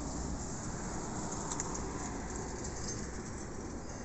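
Steady outdoor background noise, even throughout, with no distinct events.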